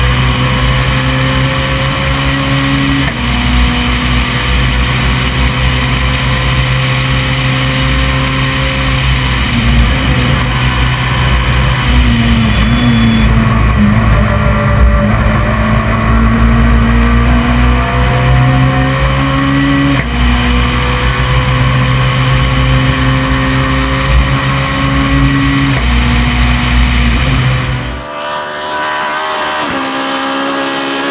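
Renault Clio R3 rally car's 2.0-litre four-cylinder engine at full effort on a special stage: the revs climb and drop sharply with each gear change, several times over. Near the end the sound switches to the car heard from the roadside as it comes towards the camera.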